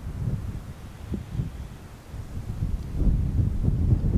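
Wind buffeting the camera microphone in uneven gusts, a low rumble that gets louder about three seconds in.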